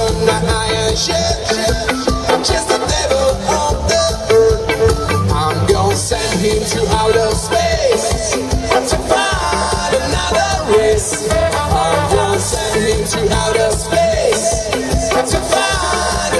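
Ska band playing live: electric guitars, bass guitar and drums, loud and continuous.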